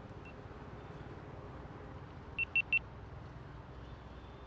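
Three short, high-pitched beeps in quick succession a little over two seconds in, over a steady low background rumble.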